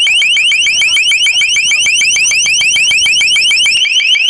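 Long Range Acoustic Device (LRAD) loudspeaker sounding its high-pitched deterrent tone: a loud, unbroken run of short rising chirps, about ten a second.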